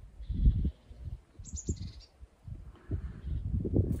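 A small bird chirping outdoors: a faint high call early on, then a quick run of high notes about a second and a half in, over low rumbling noise.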